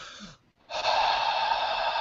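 A person's deep breath close to the microphone: a faint short breath, then from under a second in a long, loud rushing breath with no voice in it.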